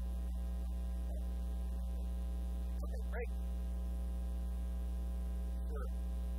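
Loud, steady electrical mains hum on the recording, a low drone with a buzzy ladder of higher overtones that never changes. A few faint, brief sounds poke through it about three seconds in and near the end.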